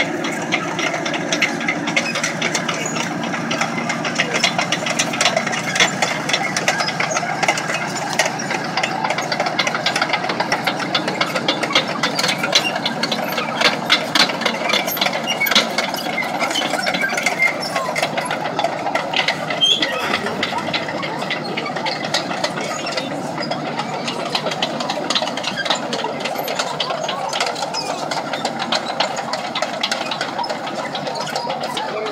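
A T-34/85 tank's V12 diesel engine running as the tank drives, with the steel tracks clattering in a steady stream of rapid clicks.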